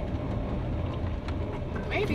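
Box truck driving, heard from inside the cab: a steady low rumble of engine and tyre noise.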